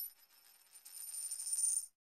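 Logo-intro sound effect: a high metallic ringing that dies away in the first moments, then a shimmering ring that swells up over about a second and cuts off sharply just before the end.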